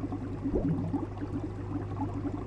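Aquarium bubbler: a fast, steady stream of small air bubbles bubbling and popping in a fish tank over a steady low hum, with one larger gurgle about half a second in.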